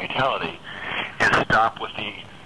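Speech only: a person talking in an interview.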